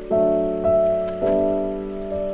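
Background piano music: sustained chords, a new chord struck about every half second and left to ring.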